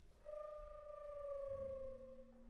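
Sparse contemporary ensemble music: a single held, nearly pure instrumental tone that slides slowly downward in pitch, joined about one and a half seconds in by a low, steady held note.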